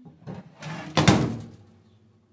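Gourmia air fryer oven being closed: a short scrape, then a single clunk of the door shutting about a second in.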